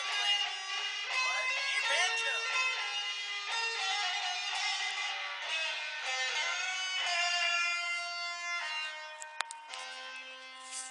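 Electric guitar, a Stratocaster-style solid body, played as a single-note lead line with string bends in the first couple of seconds. Near the end a couple of sharp clicks are heard and a last note is left ringing.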